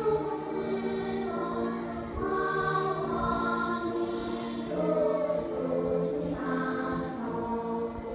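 A choir singing a slow anthem in long held notes, played over the school's loudspeakers to accompany the flag being raised.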